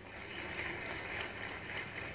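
Audience applause, muffled and steady, heard through a television's speaker.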